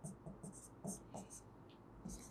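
A pen writing on an interactive whiteboard screen: a quick run of short, faint scratching strokes as letters are written.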